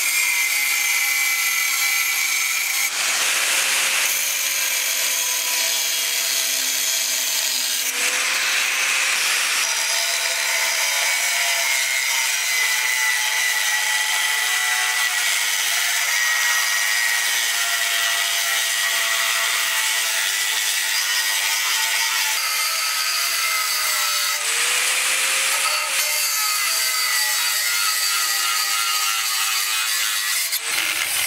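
Bosch angle grinder with a thin cutting disc running continuously and cutting through aluminium plate. Its whine sags in pitch a few times as the disc bites harder, with louder grinding noise each time.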